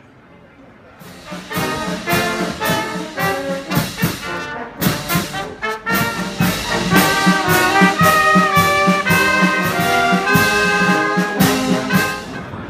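Traditional Austrian brass band, with trumpets, horns and tubas, playing outdoors. It comes in about a second in with short, punched chords, then moves into longer held notes.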